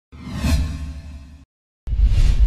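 Cinematic whoosh sound effect over a deep rumble, swelling to a peak about half a second in and then fading out. A second deep whoosh starts abruptly near the end.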